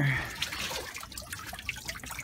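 Water dripping and trickling off a lifted clear plastic pond cover back into the pond, busier in the first second and then scattered drips.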